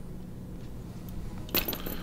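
A brief light metallic clinking about one and a half seconds in, small metal fly-tying tools touching at the vise, over a faint steady hum.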